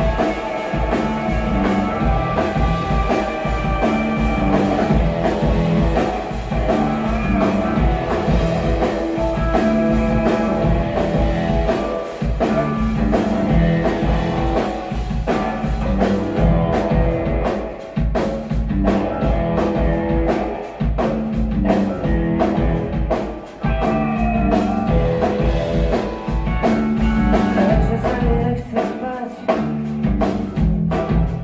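Live rock band playing: drum kit keeping a steady beat under electric guitars through amplifiers and keyboard.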